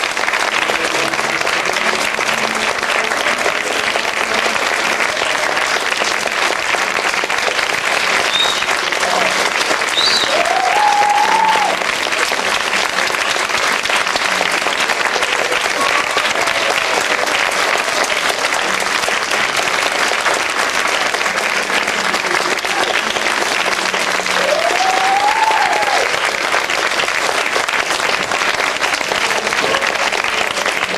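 Theatre audience applauding steadily throughout. Twice, a voice in the crowd calls out above the clapping, its pitch rising and then falling.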